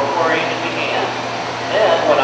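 A voice speaking briefly near the start, then a steady low hum without speech for the rest.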